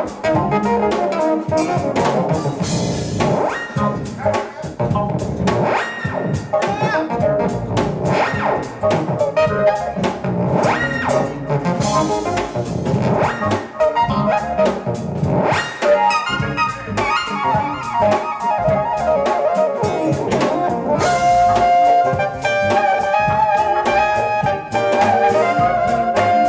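A live jazz-funk band playing, with a lead melody on a long black wind instrument over a drum kit and the rest of the band. The lead settles into long held notes in the last few seconds.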